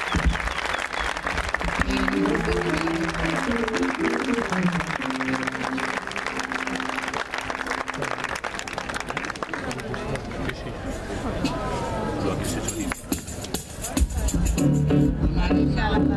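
Audience applause runs through the first part while a keyboard plays a few scattered notes. About fourteen seconds in, the band starts playing, with a heavy bass line.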